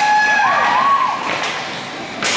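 Drawn-out shouting voices in an ice hockey rink, over a hiss of skates and a few sharp clacks of sticks and puck; it fades somewhat near the end.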